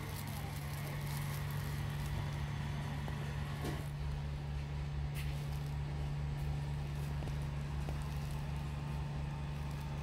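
A steady low hum with a faint background of shop noise.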